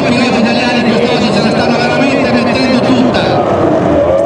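Outboard engines of Formula 2 racing powerboats running at racing speed, a continuous loud drone.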